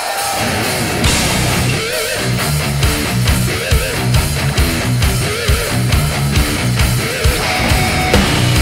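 Heavy metal band playing live with distorted electric guitars, bass guitar and drums. The full band comes in about a second in with a repeating low riff under a wavering lead-guitar line.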